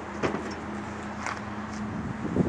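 Steady low background hum, with two faint clicks, one about a quarter second in and one just past a second.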